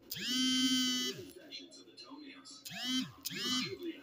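A man's voice singing a few wordless notes of a tune: one long held note at the start, then two short notes about three seconds in.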